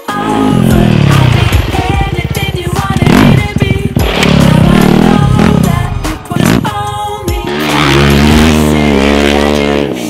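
Off-road motorcycle engines revving hard, their pitch repeatedly rising and falling with the throttle as the bikes ride over dirt, with music underneath.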